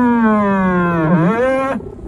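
A man's voice over public-address loudspeakers drawing out one long syllable at the end of an announcement, its pitch falling slowly, then a brief dip and rise before it stops shortly before the end.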